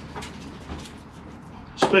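Hands working soil and roots out of a bonsai root ball in a plastic pot: a few faint, short scratchy rustles and light knocks.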